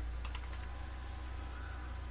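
Computer keyboard typing: a few faint keystrokes, over a steady low electrical hum.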